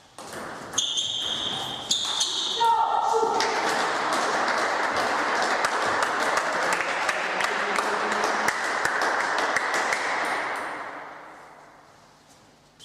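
High-pitched shouts of celebration after a won table tennis point. They are followed by several seconds of dense clapping and cheering from spectators, which fades out near the end.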